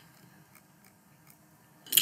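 Faint, light clicks of a computer mouse, a few scattered ticks over quiet room tone.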